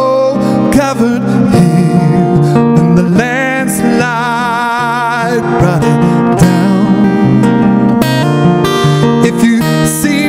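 A man singing to his own strummed acoustic guitar, holding long notes with vibrato.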